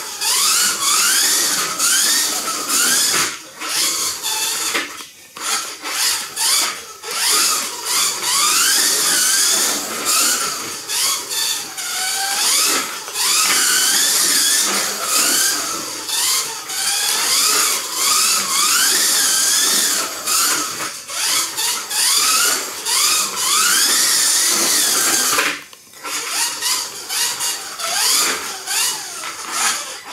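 Kyosho Mini-Z radio-controlled car's small electric motor and gears whining. The pitch rises with each burst of throttle and falls back for the corners, over and over. The whine drops away briefly about five seconds in and again near 26 seconds.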